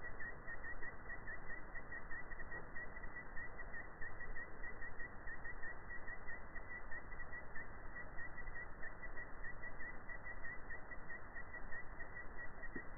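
Steady outdoor background hiss in a wood, with a faint chirp repeating about three times a second.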